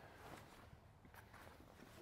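Near silence, with only faint rustling as the deflated air mattress and pump are handled.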